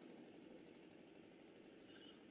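Near silence: only a very faint, even background hiss.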